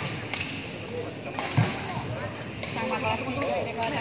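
Badminton rally: sharp cracks of rackets striking the shuttlecock, about one every second or so, over background chatter in a large hall, with a single heavier thump about one and a half seconds in.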